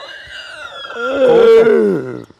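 A man's long, drawn-out vocal cry rather than words, growing louder in the second half and dropping in pitch at the end, with a second voice joining about a second in.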